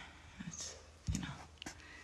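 Faint, short sounds of a woman's voice with no clear words, heard twice: about half a second in and again about a second in.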